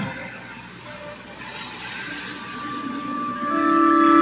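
Diffuse shuffling and rustle of a congregation rising to its feet in a large, reverberant church. About three and a half seconds in, a sustained organ chord begins and holds.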